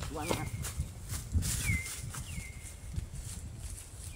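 Low rustling and crunching of water buffalo grazing in dry grass, with a bird repeating a short downward-sliding chirp about once a second. A brief voice is heard near the start.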